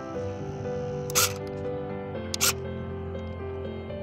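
Background music of steady, sustained notes, with two short, sharp clicks: one about a second in and a double click about two and a half seconds in.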